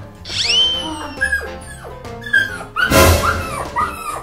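Background music with a dog's short yips and barks laid over it, and a brief noisy burst about three seconds in.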